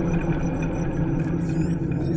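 Dark ambient electronic music: a steady low droning rumble with sustained tones and scattered short, glitchy high blips.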